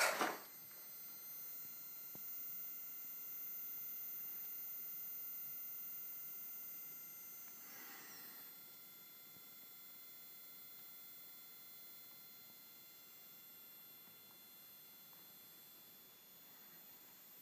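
Steady high-pitched whine made of several thin tones from running HID xenon ballasts powering their bulbs, slowly growing fainter. A short rustle right at the start and a soft brief swish about eight seconds in.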